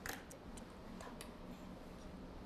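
A few faint, light clicks over a low steady room hum: one near the start, a second shortly after, and a pair about a second in.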